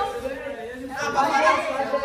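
Speech only: several young people talking at once in Portuguese, in a heated back-and-forth.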